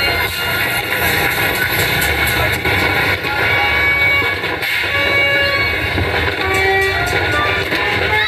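Street din of a New Year's Eve celebration: a steady wash of noise through which several horns sound short, steady notes at different pitches, with scattered sharp firecracker pops.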